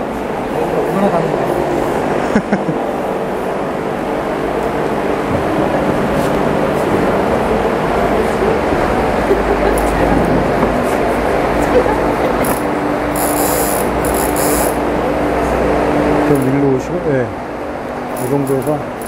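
Large electric fan blowing steadily, a loud even rush of air with a faint hum, with indistinct voices in the hall. A few short rustling hisses come about two thirds of the way through.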